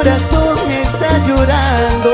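A live Peruvian cumbia band playing, with heavy, regularly repeating bass notes, steady percussion and a melodic lead line weaving over them.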